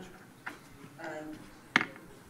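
Two sharp clicks, a faint one about a quarter of the way in and a much louder one near the end, with a brief murmur of voice between them.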